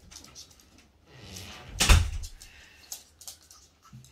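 Light taps and scuffles of chihuahua puppies playing on a laminate floor, with one sharp, loud thump about two seconds in.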